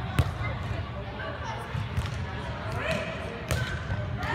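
Volleyball being struck by players' hands and forearms in a rally: short sharp slaps, the loudest just after the start, more about two seconds in and near the end.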